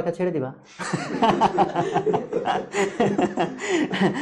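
A man chuckling and laughing while he talks, short bursts of laughter breaking up his words from about a second in.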